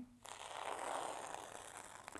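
Straight pin drawn across the paper backing of Heat N Bond Feather Lite fusible web on the back of a fabric piece, a faint scratchy scrape scoring a line so the backing paper can be peeled off. It starts about a quarter second in, swells and then thins out.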